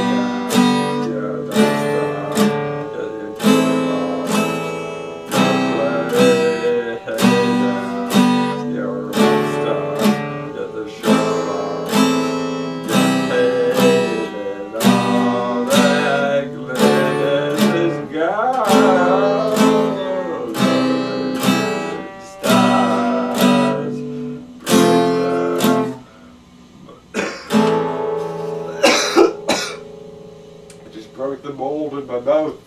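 Epiphone acoustic-electric guitar strummed in a steady rhythm, a chord roughly every second, with a man's voice coming in over it in places. Near the end the strumming thins to a few last chords.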